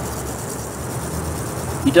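Granular pool shock powder pouring from its bag into a plastic bottle, a faint steady hiss over a low steady background hum.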